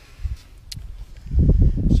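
Camera handling noise: a few light clicks, then about halfway through a loud low rumble as the camera is moved.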